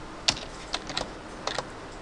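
Computer keyboard keys being pressed: about six short, separate clicks at an uneven pace.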